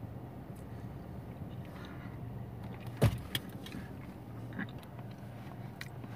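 A man chewing a soft gummy with his mouth closed: faint wet mouth clicks, with one sharper click about three seconds in, over the steady low hum of a car cabin.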